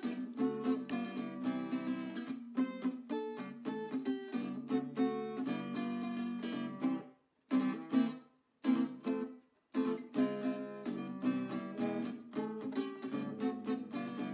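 Acoustic guitar music from a 1930s Encore parlor guitar, with single picked notes played a little sketchily. The playing stops for a few brief breaks between about seven and ten seconds in.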